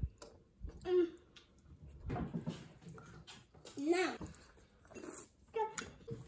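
A young child's soft, scattered vocal sounds in a quiet room, with a short spoken "No" about four seconds in.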